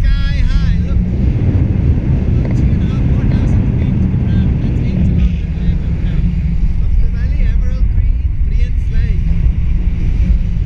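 Airflow from a paraglider in flight buffeting an action camera's microphone: a loud, steady low rumble of wind noise.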